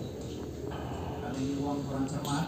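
Faint voices from the television match broadcast, with a held vocal tone in the second half, under low background noise.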